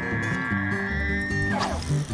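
Bull elk bugling: a long, high whistle that rises slightly and breaks off about one and a half seconds in, over background music with a steady beat.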